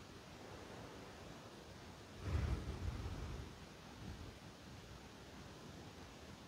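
Quiet room tone, with one soft, low swell of noise about two seconds in that lasts about a second.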